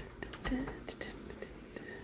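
Soft whispering, with a few faint clicks.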